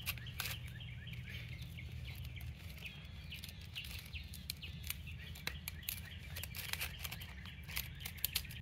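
Quarter-inch steel hardware cloth (wire mesh) clicking and scraping in many small irregular ticks as it is folded and rolled up tightly by hand.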